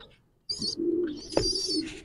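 Domestic pigeon cooing: one low, drawn-out coo starting about half a second in, with high chirping over it and a single short knock near the middle.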